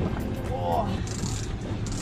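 Steady low rumble of wind and boat noise on an open fishing boat, with a brief voice a little over half a second in.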